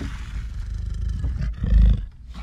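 Lion growling low and steadily, louder for a moment near the end.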